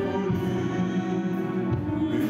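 Orchestral music of sustained, held chords, moving to a new chord right at the start.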